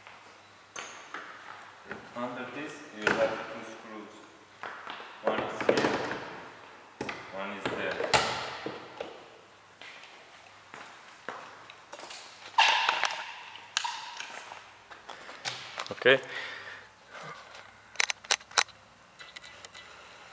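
A man's voice talking in short stretches, with knocks and a few sharp clicks near the end from a screwdriver working the screws of a plastic car door panel.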